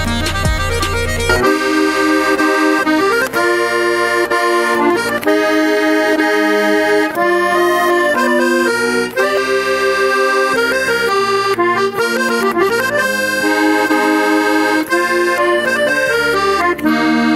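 Solo chromatic button accordion (a Moskva bayan) playing a Tatar folk melody over sustained chords. It follows a brief outdoor accordion passage with a low wind rumble on the microphone that cuts off about a second and a half in.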